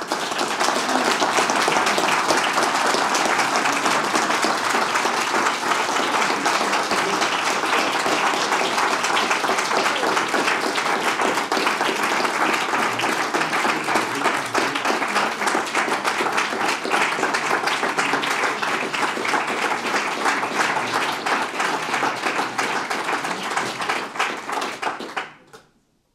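Audience applauding steadily, a dense patter of many hands clapping, dying away near the end.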